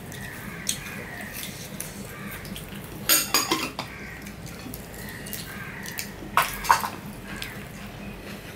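White ceramic bowl clinking against the china plates as it is handled and set down, with ringing clinks in two short clusters: one about three seconds in, the other about six and a half seconds in.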